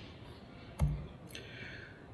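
A single sharp click with a short low thump about a second in, as the presentation slide is advanced at the podium laptop, over quiet room tone.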